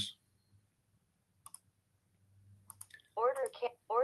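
A few sharp computer mouse clicks: a pair about one and a half seconds in, then a quick cluster of clicks near three seconds.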